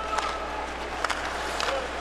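Arena crowd noise during live ice hockey play, with a few sharp clacks of sticks and puck on the ice.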